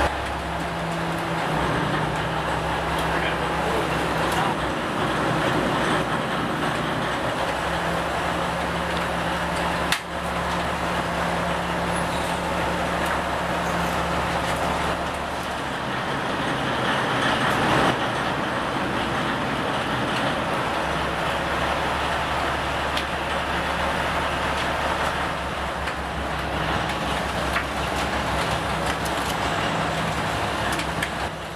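Steady drone of a commercial gillnet fishing boat's engine, heard from its enclosed work deck, with a broad wash of noise over it and a single sharp knock about ten seconds in.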